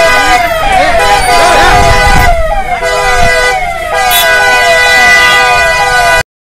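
Police escort vehicle's electronic siren sounding loudly in a repeating falling wail, about two sweeps a second, over a steady held tone, with crowd voices mixed in.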